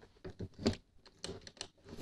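A quick run of sharp clicks and light knocks from the metal-edged pedalboard flight case as its lid is handled and settled into place.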